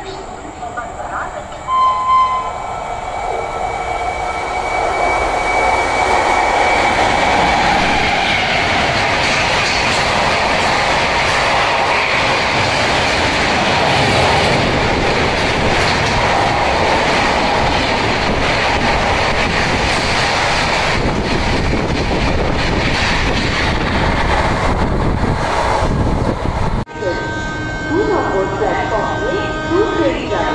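Passenger express train approaching and running through a station at high speed. A horn sounds in the distance early on, then the rush of wheels and coaches on the rails builds to a loud, steady noise lasting about twenty seconds. It cuts off abruptly near the end.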